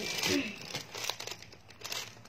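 Clear plastic garment bags crinkling as hands rummage through them, loudest in the first half second and then lighter, scattered rustling.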